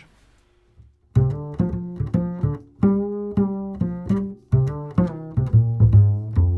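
Double bass played pizzicato on Galli BSN 920 Bronze strings: a short lick of plucked notes in the middle register, starting about a second in, each note sharply attacked and decaying.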